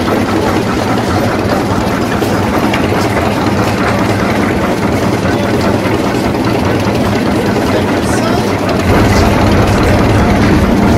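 Vintage tractor engine idling steadily with a low, even rumble that grows louder about nine seconds in.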